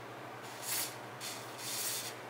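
A few short hisses of aerosol spray from a straw nozzle onto the rusty choke and throttle linkage of a Husqvarna 550XP chainsaw, spraying off the rust so the linkage moves smoothly.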